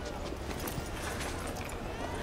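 Quiet outdoor street ambience: a low steady rumble with scattered light clicks and taps, and faint voices.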